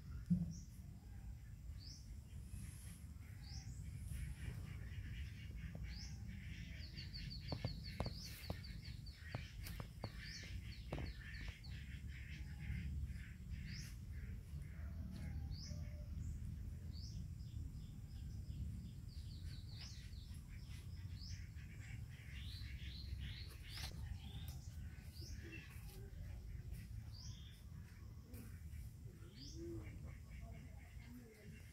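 Small birds chirping repeatedly, with a couple of quick trills, over a steady low rumble. A few sharp clicks come near the middle.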